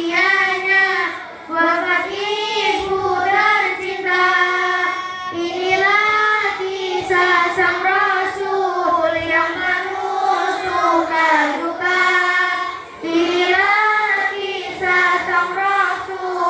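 Girls' voices chanting an Islamic devotional song in praise of the Prophet Muhammad (a maulid recitation), led by one girl singing into a microphone. Long, wavering held notes with short pauses for breath.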